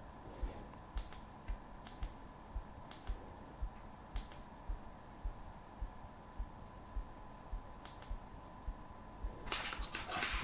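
A few faint, sharp little clicks, about a second or more apart, over a quiet steady hum with a faint regular low pulse.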